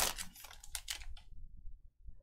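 A few light clicks and rustles in the first second from an opened trading-card pack being handled: the wrapper pulled away and the stack of cards gripped in the hands.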